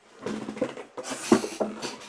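Handling noise of card boxes and plastic slabs being moved about on a desk: irregular rustling and scraping with one sharp knock a little past halfway.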